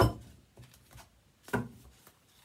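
A tarot deck being handled on a table: two sharp knocks, one at the start and a softer one about a second and a half in.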